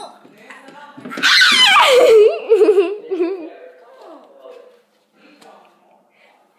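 A loud, high-pitched laugh starting about a second in. It slides down in pitch and wavers for about two seconds, then trails off into quieter voice sounds.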